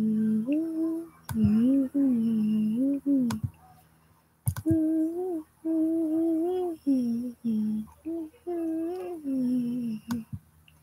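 A woman humming a tune with her mouth closed: long, held notes that waver up and down, in two runs of phrases with a break about four seconds in. A few faint clicks fall between the phrases.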